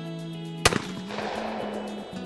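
A single shotgun shot at a clay target about two-thirds of a second in, its report trailing off in a long echo, over steady background music.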